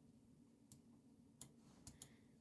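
Near silence: the drum groove playing in Cubase is not reaching the recording. Three faint ticks, which may be the drum pattern bleeding from headphones into the microphone.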